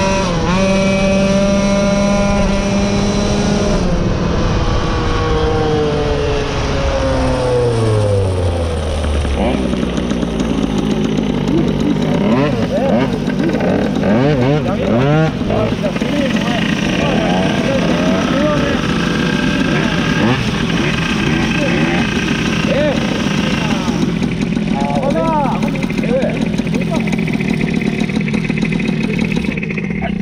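Moped engine running at road speed, its pitch then falling steadily over about five seconds as it slows to a stop. Afterwards a low engine hum continues under voices.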